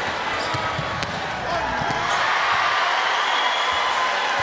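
Gym crowd noise during live basketball play, with a basketball bouncing on the hardwood court in a few sharp knocks; the crowd grows a little louder about halfway through.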